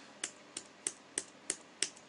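A run of six sharp clicks at an even pace, about three a second.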